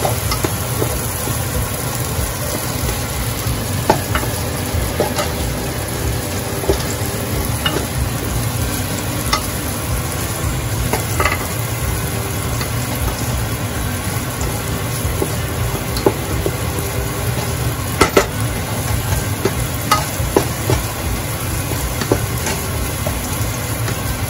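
Garlic and onion sizzling in hot oil in a metal pot, stirred with a wooden spatula that scrapes and now and then taps the pot with short sharp clicks.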